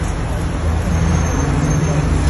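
Road traffic noise: car engines running in a queue of stopped traffic, a steady low rumble with an engine hum that grows clearer about halfway through.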